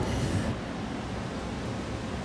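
Steady low background noise with no distinct sound event, with a faint hiss in the first half second.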